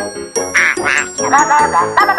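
Cartoon background music with a steady beat, and a cartoon duck quacking twice in quick succession about half a second in.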